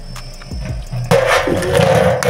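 A homemade Beyblade top spinning on a metal dish arena. About a second in, a second top is launched into the arena, and a sudden, louder, noisy whirring of spinning tops on metal sets in and carries on.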